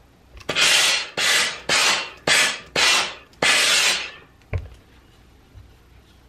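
Steam-generator iron shooting six short bursts of steam, each a hiss of about half a second, one after another. They are followed by a single thump.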